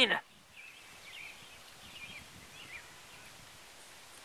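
Faint outdoor background with distant birds giving short, thin chirps every half second or so.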